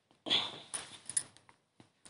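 A hand kneading wet flour and water into dough in a steel bowl: a short rustling, squishing burst about a quarter second in, followed by a few small clicks and scrapes, then it goes quiet.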